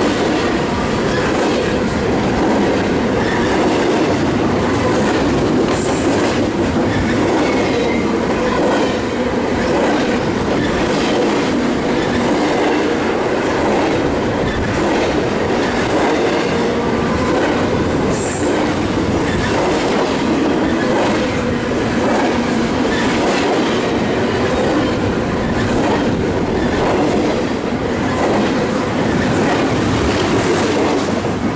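Double-stack intermodal freight train passing close by: a steady loud rumble of steel wheels on rail with repeated clicking of wheels over rail joints, and two brief high squeals, about six and eighteen seconds in.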